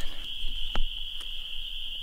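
A steady, high-pitched animal chorus running as one unbroken shrill tone, with a single sharp click a little under a second in.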